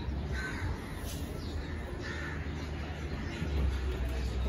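Crows cawing, two short calls about a second and a half apart, over a steady low rumble.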